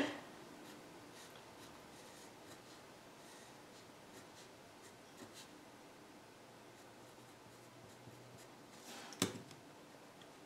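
Pen on paper, faint scratching while a box plot is sketched by hand, with a sharper tap near the end.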